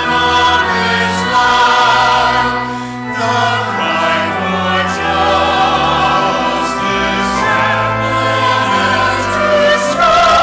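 Mixed choir singing in parts, holding sustained chords, with a brief dip in volume about three seconds in.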